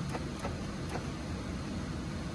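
Faint clicking from the 2017 Chevy Silverado's door lock actuators cycling on their own, about three light clicks in the first second over a steady low hum. The driver's door lock switch is toggling the unlock circuit with nothing touching the button.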